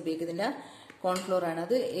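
A woman's voice talking, with a short pause about half a second in.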